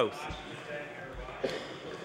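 The last of a man's word falls away at the start, then quiet chamber room tone with two soft low thumps, about a quarter second and just over a second in, and a faint click near the middle.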